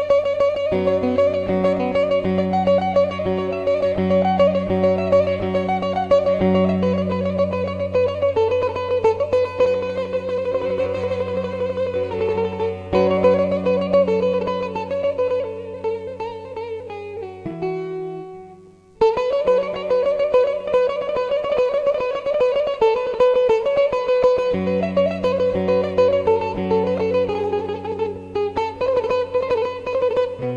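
Oud with a pickup playing an improvised taqsim melody over a steady low drone. About two-thirds of the way through, the sound dies away almost completely, then the playing starts again.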